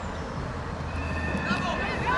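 Distant shouts from youth footballers in play, with a steady high tone lasting about a second in the middle, over a low outdoor rumble.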